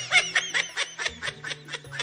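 A high-pitched snickering laugh, a rapid run of short bursts about six a second, over background music with low held notes.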